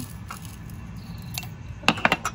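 Faint handling of a plastic spoon and glass spice jar while pepper is sprinkled over fish, then a sharp clink or two near the end as the glass jar meets the metal counter.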